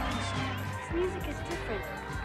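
Rock song played by a band, with a steady bass line and drums, and a voice over it.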